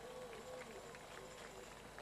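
Faint crowd noise with a far-off voice, in the lull between spoken lines.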